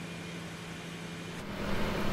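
A steady low hum under faint hiss. About one and a half seconds in, the background changes and grows slightly louder.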